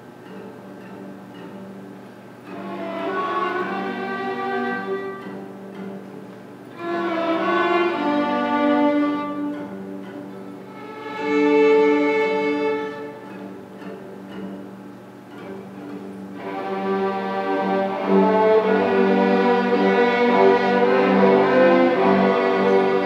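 String orchestra of violins, cellos and basses playing softly over a steady low held note. Short phrases swell and fade three times in the first half, then the ensemble plays fuller and louder for the last third.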